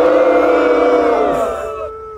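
Several voices holding sung notes together at different pitches, a loud group chord that dies away near the end.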